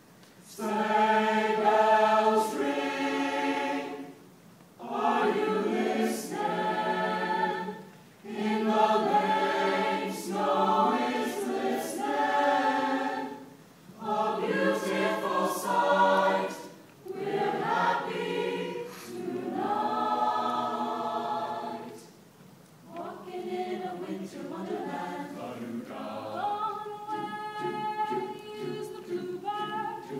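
A mixed high-school choir singing, in phrases of a few seconds with short breaths between them, somewhat softer near the end.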